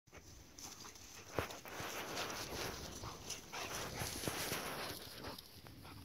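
Two dogs playing chase and wrestling in the grass: scuffling paws and rustling, with one sharper thump about a second and a half in.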